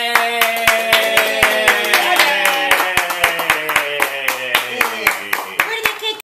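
Hands clapping at a quick even pace, about four or five claps a second, under one long drawn-out vocal cheer that slowly slides down in pitch.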